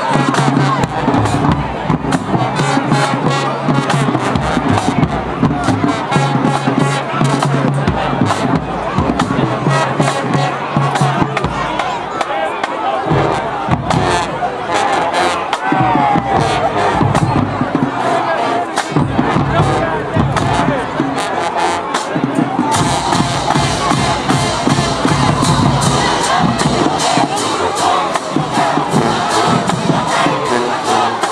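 High school marching band playing, brass and sousaphones over a drumline, with a crowd cheering and shouting along, louder in the last several seconds.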